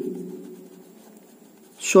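Pen writing on ruled notebook paper, a faint scratching of the tip across the page, with a man's voice trailing off at the start and starting again near the end.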